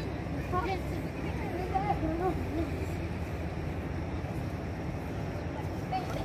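Faint children's voices calling out in the first couple of seconds, over a steady low outdoor rumble.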